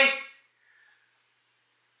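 The drawn-out end of a man's exclaimed "really?" fading out about half a second in, then near silence: room tone.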